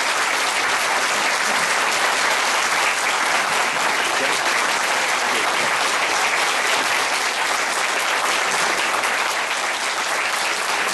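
Audience applauding steadily, many hands clapping in a dense, even wash of sound.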